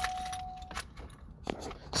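A steady beep-like single tone that cuts off sharply under a second in, followed by a few faint clicks.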